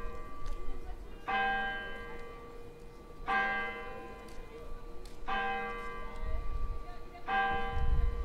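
Church bell striking five o'clock: four strokes about two seconds apart, each one ringing on into the next.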